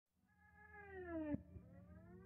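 Electronic intro music: a synthesized tone fades in and slides down in pitch, is cut by a sharp click about a second and a third in, then a second tone slides back up over a low steady hum.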